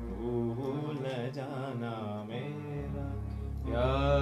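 A man singing long, wavering held notes over an electronic keyboard accompaniment with sustained bass notes that shift to a new note about three seconds in; the singing swells louder near the end. The song is set in raga Marwa.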